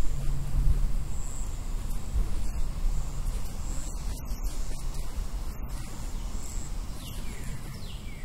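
Steady outdoor background noise with a low rumble. A few short, falling bird chirps come near the end.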